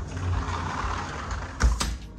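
Two sharp clicks close together near the end, over a rustling noise and a low rumble.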